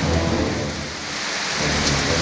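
Steady rain with a low rumble of thunder during a thunderstorm. The rumble eases about a second in and swells again near the end.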